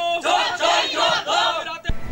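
A crowd of mostly women shouting a slogan in unison, three loud chanted phrases, breaking off suddenly near the end.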